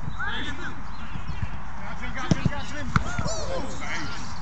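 Footballers shouting and calling to each other during play, with a few thuds of a football being kicked.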